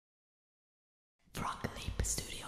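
A whispered voice, starting just over a second in, with low thumps beneath it.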